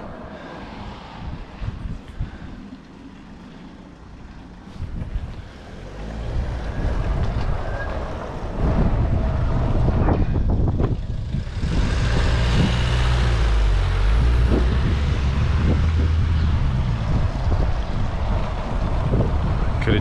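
Gusting wind buffeting the microphone of a moving Segway rider. It is a low rumble, quieter at first, that builds from about six seconds in and stays loud through the second half, with a sharper rushing gust partway through.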